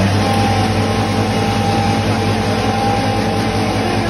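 Foam cutter machine running steadily: a low hum with a steady higher whine over it.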